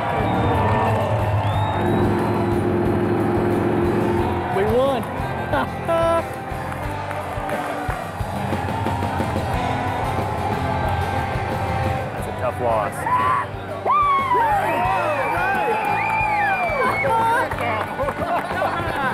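Excited shouting and whooping from a celebrating group over background music, with a crowd cheering; the whoops come thickest in the last few seconds.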